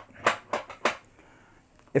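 Dual-function lever of an office chair's swivel/tilt mechanism slid in and out by hand, which sets and releases the tilt lock: about four short clicks within the first second.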